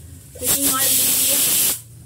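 Gas stove burner hissing as the gas is turned up to full: a loud, even hiss that starts about half a second in and stops after about a second and a half.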